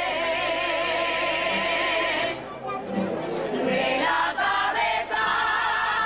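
Music with singing: sustained sung notes with vibrato. The singing drops away about two and a half seconds in and comes back with held notes in the second half.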